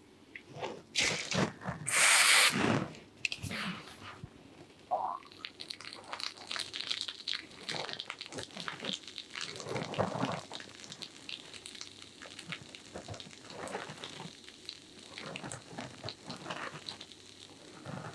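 Carbonated head-spa foam hissing from an aerosol can onto the scalp in two short sprays early on, then fingers working the foam through the hair with a soft, continuous crackling.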